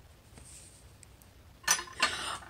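Quiet handling sounds: a few faint light clicks and taps of the plastic cup and tools while powder is tipped into water, then a brief louder sound near the end.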